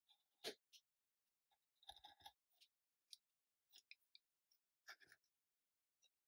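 Craft knife drawn along a steel ruler, cutting through thin plywood in a few short, faint scraping strokes, the sharpest about half a second in and a cluster around two seconds. The cut shaves about a millimetre off the bottom of the piece so that it has clearance to slide into place.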